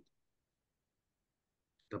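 Near silence in a video call: a voice cuts off abruptly at the start, the line stays dead quiet, and speech resumes just before the end.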